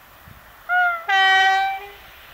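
Two-tone air horn of a Polish EU07-family ('siódemka') electric locomotive sounding: a short higher note, then a longer lower note held for most of a second.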